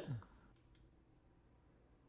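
Near silence broken by one faint computer mouse click about three-quarters of a second in, as the Control Panel search result is clicked open.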